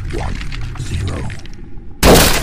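Intro countdown sound effects: a dense rushing whoosh over a pulsing low beat, thinning out in the last half second.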